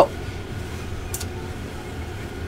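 Steady low background hum with no sewing-machine stitching, and a brief soft rustle of fabric being handled about a second in.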